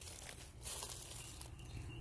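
Faint rustling and crinkling as a dry Swiffer sheet is handled and laid out.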